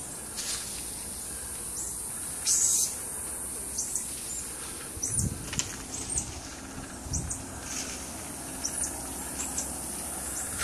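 Steady high insect drone with many short, high, downward chirps from animals in the canopy scattered through it. There is a louder rustling burst about two and a half seconds in and a few low thumps around five and seven seconds.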